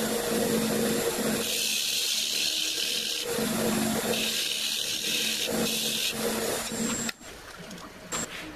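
Wood lathe running with a steady motor hum while a flat tool cuts the spinning silver maple, giving two long stretches of hissing shearing noise. The hum cuts off about seven seconds in.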